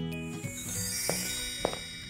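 Sparkly twinkle sound effect, a high shimmer that fades out, over the last held notes of background music.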